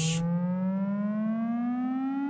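A test tone from a frequency sweep, with overtones above it, gliding slowly and evenly upward through about two hundred hertz.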